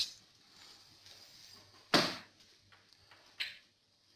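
Handling noise from the pressure transmitter being moved and a screwdriver set to its zero adjustment: one louder knock about two seconds in, a fainter short sound a little later, and low background hiss.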